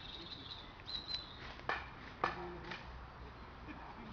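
Small birds chirping among the trees in short high notes, with three or four sharp clicks or snaps near the middle.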